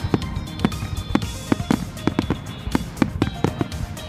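A fireworks display with rapid, irregular bangs from shells bursting, two to four a second, with music playing along.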